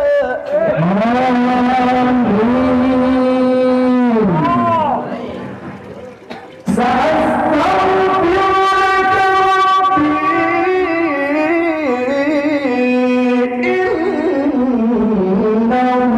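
Male qari reciting the Quran in the melodic tilawah style into a handheld microphone, holding long ornamented notes. His first phrase fades out about five seconds in. After a short breath, a new, higher phrase starts about seven seconds in and is held and embellished to the end.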